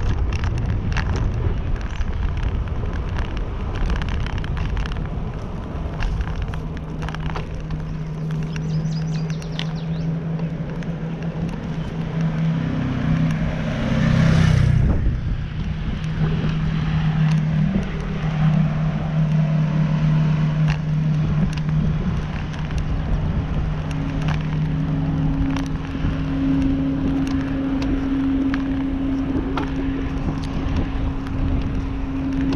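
A motor vehicle on the move: a low rumble with a steady engine hum that shifts in pitch now and then, and a brief louder rush about halfway through.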